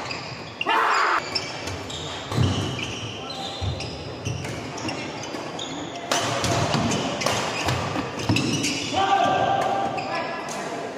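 Badminton doubles rally: sharp racket hits on the shuttlecock, rubber shoe soles squeaking on the court floor and footfalls, echoing in a large hall, with players' calls or shouts.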